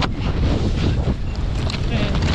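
Strong wind buffeting the action camera's microphone in a heavy rumble, over the scrape and chatter of a snowboard riding across hard, crusty snow.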